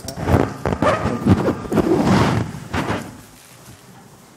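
Irregular knocks and thumps mixed with indistinct room noise, dying down about three seconds in.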